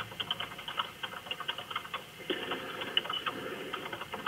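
Computer keyboard typing heard over a telephone line: rapid, irregular key clicks that sound thin and muffled through the phone.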